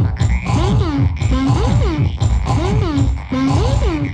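Electronic synthesizer loop from a Mochika synth: a swooping tone that bends up and back down repeats roughly once a second over a pulsing low bass line.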